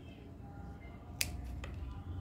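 Scissors snipping through a jade plant stem: one sharp click about a second in, then a fainter click shortly after, over a low steady hum.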